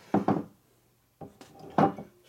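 Aluminium motorcycle engine cases being handled and set down on a workbench: a few short knocks and clinks, the sharpest near the end.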